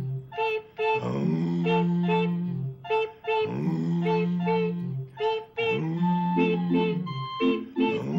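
Two voices performing together as a simple tune: a low held 'singing' note that swoops up at its start and repeats about every two seconds, with quick groups of short high 'beep, beep' notes between and over it.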